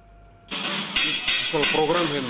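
Brief near-quiet, then a loud, steady hiss starts suddenly about half a second in, with voices heard through it near the end.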